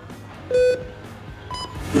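Electronic start signal of a speed-climbing race. A beep comes about half a second in, and a shorter, higher-pitched beep follows about a second later, sending the climbers off.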